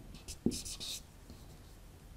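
Whiteboard marker writing on a whiteboard: a few short scratchy strokes in the first second, with a light tap of the tip about half a second in.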